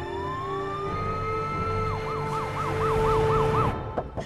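Ambulance siren winding up in a rising wail, then switching to a fast yelp of about four sweeps a second; it cuts off suddenly near the end.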